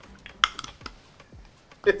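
Several plastic water bottles being twisted open, a scatter of sharp clicks and crackles as the caps' seals break, with one louder snap about half a second in.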